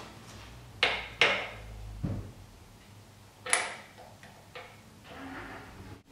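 Steel parts of a double cardan driveshaft joint being handled at a bench vise: a few sharp metal clinks and knocks, the loudest a pair about a second in and another about three and a half seconds in, with lighter taps and a soft rustle near the end.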